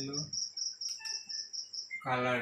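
Cricket chirping steadily in the background: a fast, even run of short high pulses, about six a second. A man's voice trails off in the first half-second.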